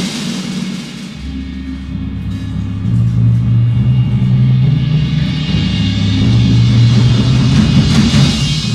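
Drum band percussion ensemble playing a low passage of deep sustained notes that grow louder from about three seconds in, with a crash near the end.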